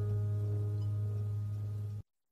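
The last acoustic guitar chord of a song ringing out and slowly fading, then cut off suddenly at the very end.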